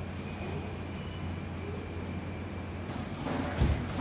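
Small hand trowel digging and scraping into dry soil, faint at first, with rougher scraping near the end and a low thump just before it ends.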